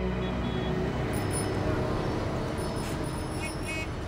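Street traffic: a steady hum of road vehicles, with a few faint high chirps and clicks in the second half.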